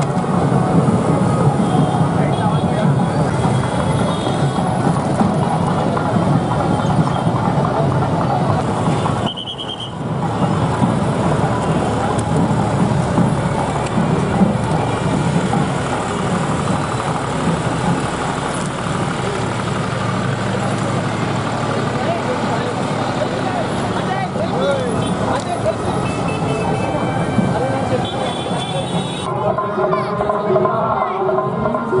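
Busy street noise: crowd voices mixed with motorcycle and auto-rickshaw engines, a dense, steady jumble with a brief drop about nine seconds in.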